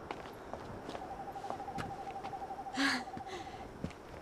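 An owl's long monotone trill, one quavering note held for about two and a half seconds against a faint night-time background. A brief breathy noise comes near the end of the trill.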